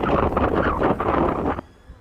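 Wind buffeting the microphone outdoors, a loud steady noise that cuts off suddenly about one and a half seconds in.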